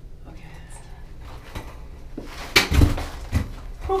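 Roller skates on a hard restroom floor, with two heavy thumps about two and a half and three and a half seconds in as the skater comes to the sink. A steady low hum runs underneath.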